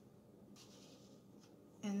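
Faint soft rubbing of a paintbrush working in paint, then a woman's drawn-out 'and' near the end.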